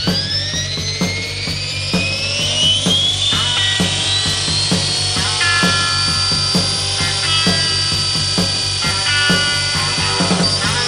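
The motor of an RC tandem-rotor CH-47 Chinook model whines as its two rotors spool up. The pitch rises over the first three seconds, then holds a steady high note at flying speed. Rock music with a steady beat plays over it.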